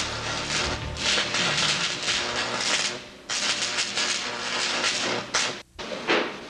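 Sci-fi sound effect of crackling, hissing electrical discharge in irregular surges as an experiment's energy field collapses. It dips about halfway through and cuts out briefly just before the end.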